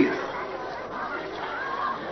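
Steady, indistinct murmur of audience chatter.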